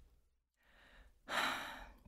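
A woman drawing a breath: a faint breath, then a louder, longer one about a second and a half in.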